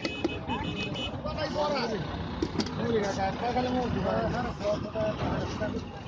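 Nearby voices talking over one another, with clicks and rattles of a spoon mixing puffed rice in a plastic bucket. A high, steady, horn-like tone sounds during the first second.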